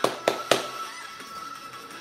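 Hand claps, three quick claps in the first half second and then stopping, over background music.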